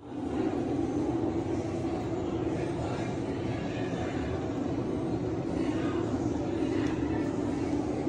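An electric blower running steadily in a restroom: an even rush of air with a low hum that does not change.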